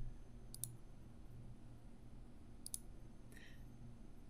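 Computer mouse button clicks, quiet and sharp, in two quick pairs: one about half a second in and another near three quarters of the way through.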